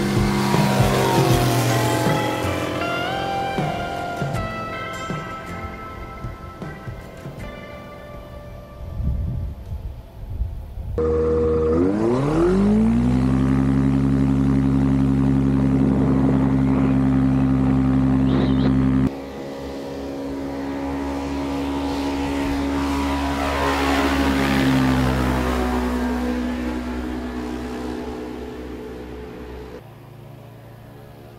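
Light propeller airplane engines. First a plane passing low, its engine note falling and fading over several seconds. Then, after an abrupt change, a nearer engine drops in pitch and runs steadily, followed by another steady engine note that swells and then fades away.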